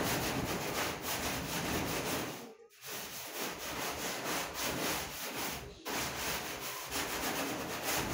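Stiff stick broom scrubbing a wet, soapy metal door in rapid back-and-forth strokes, with two short pauses between bouts.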